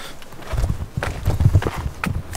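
Footsteps on rocky ground and the handling of a handheld camera as it is carried, heard as an uneven run of low thuds and rumble starting about half a second in.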